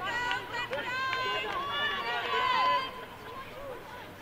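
Several high-pitched voices shouting and calling out over one another across a sports field, loudest for the first three seconds and dropping off after that.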